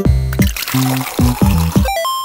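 Juice pouring into a cup from a vending machine's dispenser, a steady splashing hiss that stops just before the end, over a children's song's backing music with a bouncing bass line.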